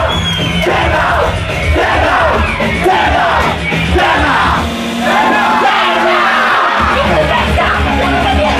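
Live band music played loud through a club sound system, with a vocalist shouting over it and the crowd yelling along. The bass drops out for about two seconds in the middle, then kicks back in.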